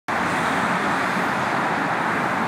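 Steady traffic noise from cars driving on a multi-lane freeway below, tyres and engines blending into one even hiss.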